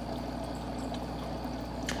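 Steady bubbling and trickling of air lines aerating green phytoplankton cultures in plastic bottles, with a low steady hum underneath.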